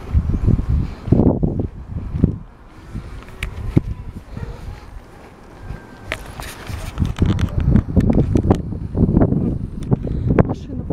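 Wind buffeting the handheld camera's microphone in irregular gusts, with a quieter lull in the middle.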